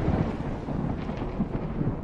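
Intro sound effect: the tail of a deep boom, a low rumble that slowly fades.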